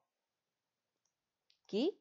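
Near silence for about a second and a half, a faint click, then a woman's voice resumes briefly near the end.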